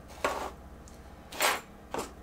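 Two brief handling noises as objects are moved and set down on a work table: a sharp knock about a quarter second in and a short scuff about a second and a half in.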